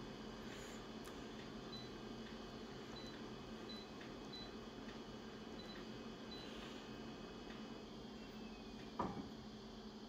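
Office multifunction copier humming steadily at idle, with a faint high beep repeating about every two-thirds of a second for a few seconds as its touch-panel keys are pressed, and a soft knock near the end.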